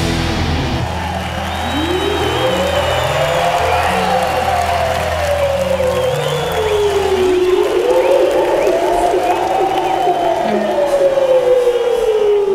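A live rock band's closing held low notes that die away about seven seconds in, with two slow swooping tones that each rise and then fall, over a crowd cheering.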